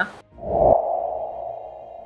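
Video-editing transition sound effect: a low thud about half a second in, followed by a steady ringing tone that slowly fades.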